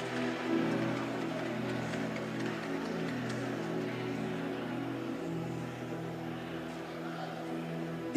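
Soft background music of sustained, held chords with no beat, changing chord about half a second in and again about five seconds in.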